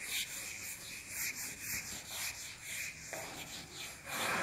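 Whiteboard eraser wiped in repeated rubbing strokes across a whiteboard, a few strokes a second, clearing marker writing.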